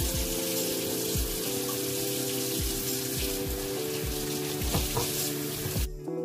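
Kitchen tap running into a stainless steel sink, the stream splashing over vegetables being rinsed by hand, with soft background music under it. The water cuts off suddenly just before the end.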